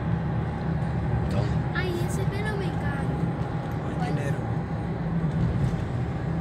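Steady road and engine noise inside the cabin of a moving car, with faint voices now and then.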